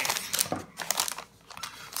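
A paper bag crinkling as it is handled, a dense run of crackles with a short lull about halfway through.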